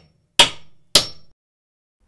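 Two sharp wooden knocks about half a second apart, as pine lattice panels are knocked against each other while being fitted together.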